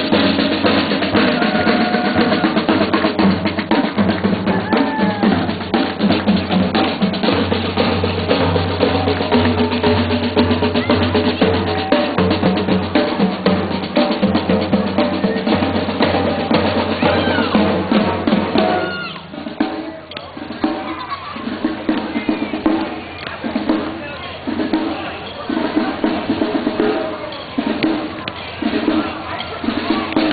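Drums playing, with snare drum rolls and bass drum. About two-thirds of the way through, the fuller sound drops away to a sparser, regular beat about once a second.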